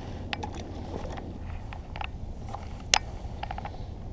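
Small clicks and light knocks of rod, reel and tackle being handled in a kayak over a low steady rumble, with one sharper click about three seconds in.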